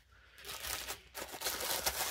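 Clear plastic packaging bags crinkling as they are handled. It starts about half a second in, with a brief lull about a second in.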